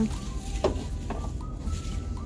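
Shop room tone: a steady low hum with faint, thin, wavering high tones above it.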